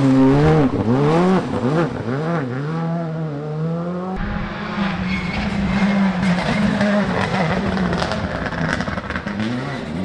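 A Skoda Fabia Rally2 rally car's engine passes close through a hairpin, its pitch swinging down and up several times with lifts and gear changes. About four seconds in, the sound cuts abruptly to another rally car's engine held at a steadier high pitch.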